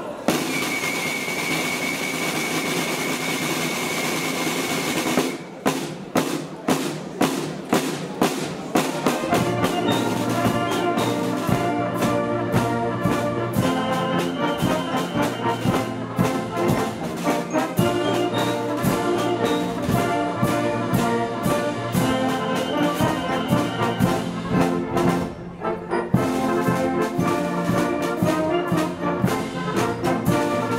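A large wind band plays. A sustained rolling sound with one high held note comes first, then regular sharp strokes, and after about nine seconds massed trombones and trumpets come in with full chords over the beat.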